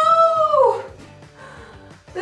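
A high, drawn-out howl-like call that arches slightly in pitch and falls away less than a second in, leaving only quieter background.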